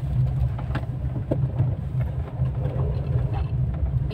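Car running at low speed, heard from inside the cabin: a steady low engine and road rumble with a few faint clicks.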